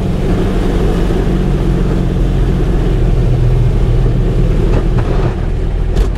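Kubota RTV-X1100C utility vehicle's three-cylinder diesel engine running steadily at a set PTO throttle while it drives the front-mounted sweeper. The engine note eases slightly near the end.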